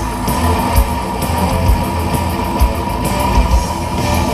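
Live metal band playing loud through the stage PA: electric guitars over bass and drums, with one guitar note held through the passage.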